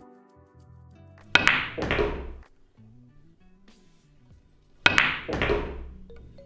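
Pool cue striking the cue ball, then a second knock about half a second later, heard twice about three and a half seconds apart, over quiet background music.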